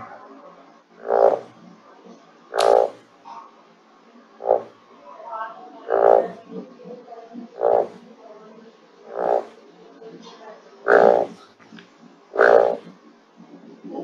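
A recording of painted balloon frog (Kaloula taprobanica) calls: about eight short, loud, low pulsed notes, repeated roughly every one and a half seconds.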